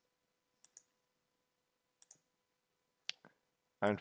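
Three computer mouse clicks about a second apart, each a quick press-and-release double tick.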